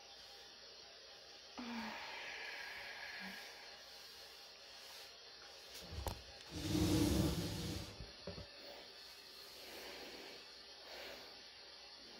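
A woman's long breathy exhale close to the microphone, about six and a half seconds in, over faint rustling and hiss.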